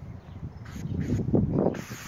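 Aerosol sunscreen spray can hissing in short bursts, a brief one about a second in and a longer, louder one near the end, over low rumbling on the microphone.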